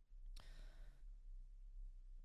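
A woman's faint sigh, a soft breath lasting about half a second shortly after the start, over a low, steady room hum.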